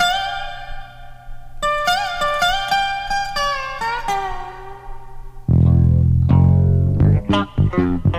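Bluegrass instrumental intro: a dobro plays a lead alone with sliding, bending notes. About five and a half seconds in, the bass and the rest of the band come in under it.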